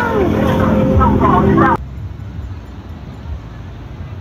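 Children's voices that stop abruptly less than two seconds in, giving way to a steady hiss of wind and breaking surf on the beach.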